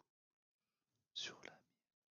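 Near silence, broken a little over a second in by one short whispered sound from a person, lasting about half a second.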